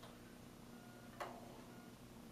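Near silence with a faint steady low hum and a single soft click a little past a second in.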